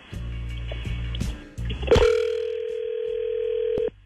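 Outgoing telephone call over the line: line noise, a click about two seconds in, then one steady ringback tone lasting about two seconds before it cuts off.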